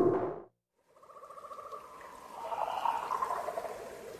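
Faint jungle ambience sound effect fading in about a second in: trickling, dripping water with a fine rhythmic pulsing that swells in the middle, setting up a rain-soaked jungle.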